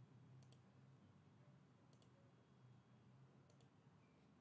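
Computer mouse button clicking faintly three times, about a second and a half apart, each click a quick double tick of press and release, over a low steady room hum.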